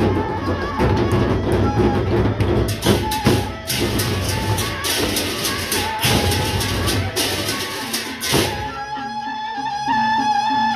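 Sasak gendang beleq gamelan playing: large barrel drums and clashing hand cymbals beat in a dense, fast rhythm, with the cymbal crashes strongest in the middle. Near the end the drums and cymbals drop back, leaving a sustained melodic line.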